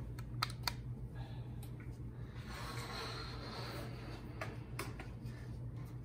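Hampton Bay Ansley ceiling fan running steadily with a low hum, under a few sharp clicks: two close together in the first second and more later on. A brief soft hiss rises and fades around the middle.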